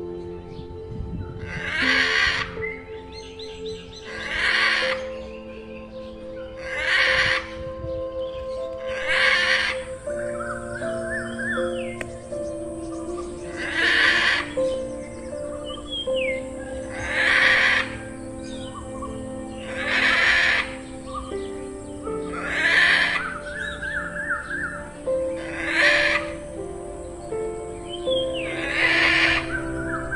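Parrot squawks, about ten harsh calls repeating every two to three seconds, over soft background music of sustained notes. Small bird chirps and warbles sound between the squawks, and a steady high hiss comes in about nine seconds in.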